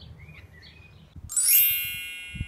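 A bright, shimmering chime with many high ringing tones strikes about a second and a half in and rings on, slowly fading, as a reveal sound effect. Before it, faint birds chirp.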